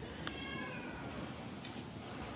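Newborn macaque giving one short, high, mewing cry that falls slightly in pitch, starting a moment in, followed by a faint click or two near the end.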